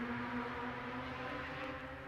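A steady low motor hum, slowly getting quieter.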